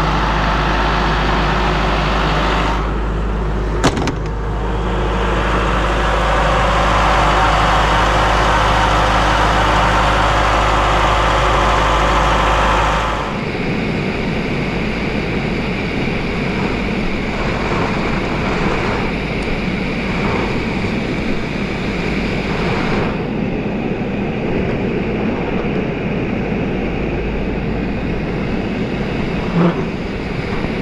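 Doosan portable air compressor running steadily with a deep, even hum, with a single sharp click about four seconds in. About thirteen seconds in, the deep hum drops out and a rougher, slightly quieter machine noise continues.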